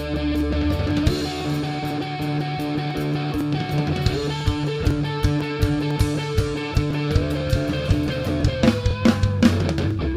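Live rock band playing an instrumental passage: electric guitar and bass guitar hold sustained notes over a Pearl drum kit keeping a steady beat. The drumming gets busier near the end.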